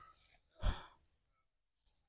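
A person's single short sigh, a breathy exhale, about two-thirds of a second in; otherwise near silence.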